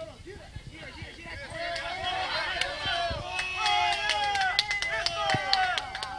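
Muay Thai fight crowd shouting and yelling, swelling sharply about two seconds in as a fighter is knocked down, with a string of sharp smacks mixed in.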